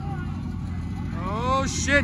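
Low, steady rumble of car engines idling in the street under crowd noise, with a raised voice calling out from about a second in.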